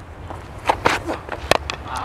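A couple of dull thuds, then a single sharp crack of a cricket bat striking the ball about one and a half seconds in, the ball taking an edge.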